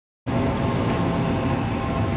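Crane's engine running steadily, heard from inside the operator's cab: a constant hum with several even tones, starting just after the opening silence.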